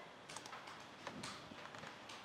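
A few faint, scattered clicks of computer keyboard keys being pressed, with a quick little run of them near the end.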